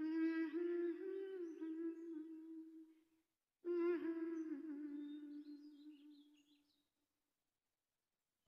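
A single voice humming a slow, wordless melody in two long held phrases, the second fading away about six and a half seconds in.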